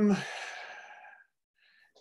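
A man's drawn-out "um" trailing into an audible sigh, a breathy out-breath that fades away after about a second.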